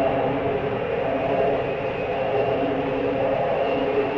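A steady, dense rumbling drone, an animated sound effect of mobile suits' thrusters as they fly through space.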